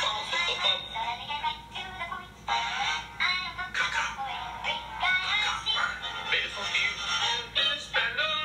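A rap song with auto-tuned vocals, the voice sliding and breaking in quick sung phrases.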